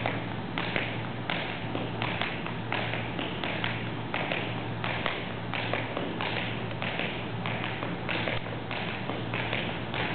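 Tap shoes dancing a repeated drawback (spank, heel, step): the metal taps strike the floor in a steady, even rhythm of about two to three taps a second.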